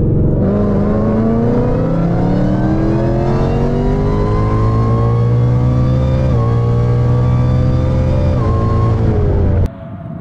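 Heavily cammed Roush Mustang V8 at wide-open throttle, heard from inside the cabin, its pitch climbing steadily as the car pulls through the gears, with brief drops at the automatic's upshifts about two, six and eight and a half seconds in. The sound cuts off suddenly near the end.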